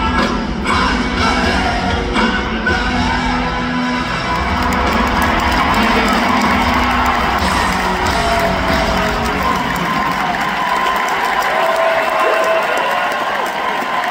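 Live rock band in an arena reaching the end of a song, the music thinning out and its bass dropping away about two-thirds of the way through, while the crowd cheers and whoops over it.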